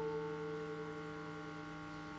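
The last plucked notes of an acoustic guitar ringing on and slowly dying away, with no new notes played. A steady low electrical hum runs underneath.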